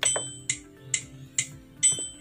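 Yamaha PSR SX600 keyboard's built-in metronome ticking steadily at a little over two clicks a second. Every fourth click is a different, higher, ringing one, heard at the start and again near the end.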